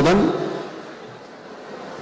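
A man speaking into a handheld microphone finishes a phrase just after the start, his voice trailing off over about half a second, then a pause of faint, steady room hiss.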